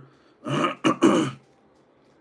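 A man's brief non-speech vocal sound: two short breathy bursts, about half a second in and again about a second in.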